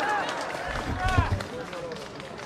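Several voices of people in an outdoor crowd talking in the background, with a few low thumps near the middle.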